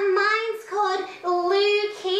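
A woman puppeteer singing in a high, put-on child's voice for a hand puppet, a few held notes with short breaks between them.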